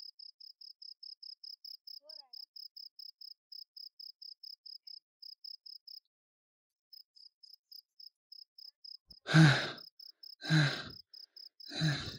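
Crickets chirping in a steady, high-pitched pulse, about four to five chirps a second, with a pause of about a second midway. In the last three seconds a man makes three short, loud, breathy vocal sounds.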